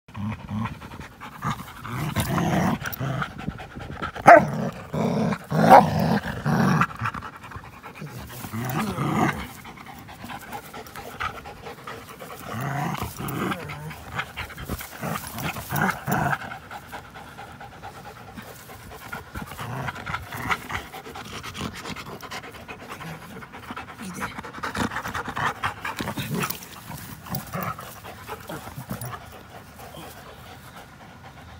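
Two dogs, an American pit bull terrier and a Belgian Malinois mix, panting close to the microphone as they play rough and tug a rope toy. The sound comes in loud bouts with quieter gaps, and two sharp, loud sounds stand out about four and six seconds in.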